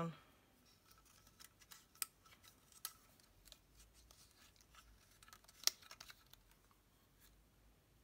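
Plastic paper label punch being handled: a faint, scattered run of small clicks and taps, with one sharper clack about five and a half seconds in.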